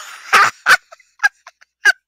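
A woman's excited laughter in a string of short, quick bursts.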